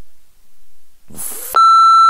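Censor bleep: a loud, steady, high-pitched single tone starting about one and a half seconds in, laid over a spoken swear word. A short breathy burst of the word's onset comes just before it.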